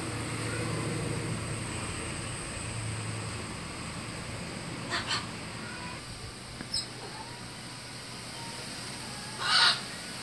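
Outdoor dusk ambience: a steady low hum for the first few seconds, then short bird calls. There are two quick calls about five seconds in, a faint high chirp soon after, and one louder call near the end, the loudest sound.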